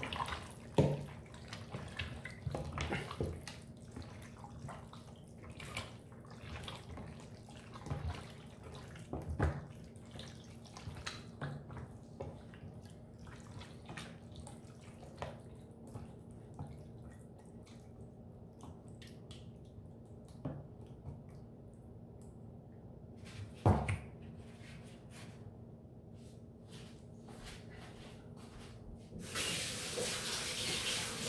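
A hand kneads chicken pieces in a thick, wet marinade in a plastic container, making soft wet squelches and small sticky clicks. There is one louder knock a little before the end.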